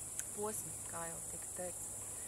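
Crickets chirping: a steady, high-pitched insect trill running on without a break.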